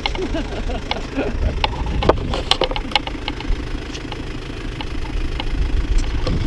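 An Isuzu D-Max pickup truck's engine idling steadily, with scattered sharp clicks over it.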